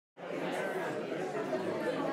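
Several people chatting in a room, the conversation starting abruptly just after the opening silence.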